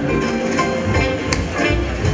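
Small swing jazz band playing live: an archtop guitar plays lead lines over upright bass and drums. There is a sharp drum or cymbal hit about a second and a half in.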